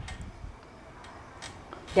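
A quiet pause with faint background noise and a few faint ticks: one at the start, then two more around a second and a half in.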